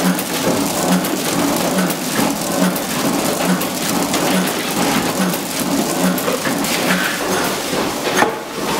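Packing machine running at speed: a dense clatter of rapid clicks with a regular low thump a little faster than once a second as it cycles.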